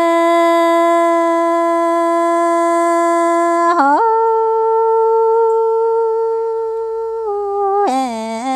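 A woman singing a Hmong song unaccompanied in long held notes: one steady note for nearly four seconds, then a quick slide up to a higher note held steadily, stepping down slightly near the end and breaking into a wavering turn.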